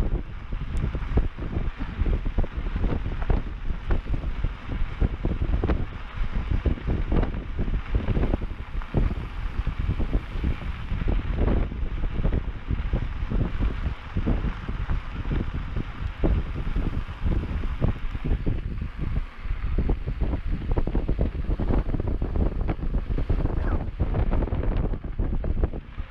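Wind buffeting the camera's microphone during a mountain bike ride down a dirt trail, over the rumble of the tyres on dirt. Frequent short knocks and rattles from the bike come as it goes over bumps.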